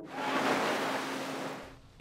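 Seawater rushing and splashing over a submerged lift platform with a great white shark on it, a steady wash that fades out near the end, with a faint steady hum underneath.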